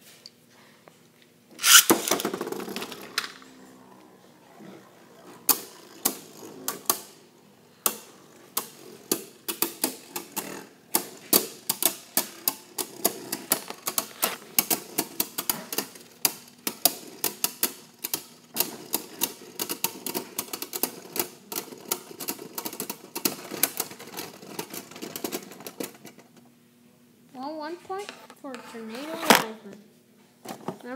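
A Beyblade launch with a loud whirring rip about two seconds in, then two Beyblade Burst spinning tops whirring in a plastic stadium and clashing in rapid, uneven clacking hits for over twenty seconds, until the clicks stop near the end as the battle ends.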